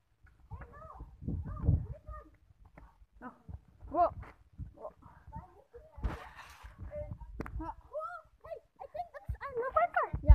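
Children's voices, short indistinct calls and exclamations, with deep bumps and rumble from a handheld phone camera being swung about.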